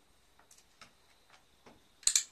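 Near silence with about five faint, scattered ticks.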